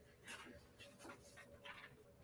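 Near silence: faint, scattered scratches of a pen writing on paper over a faint steady hum.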